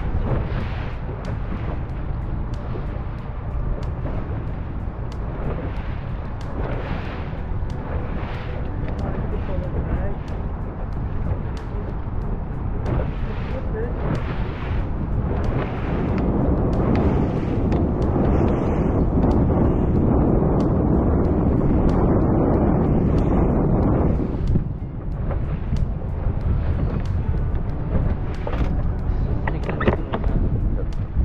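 A 70 hp outboard motor running on a small boat under way, with wind buffeting the microphone and water rushing past. The wind noise swells for several seconds about halfway through, then eases.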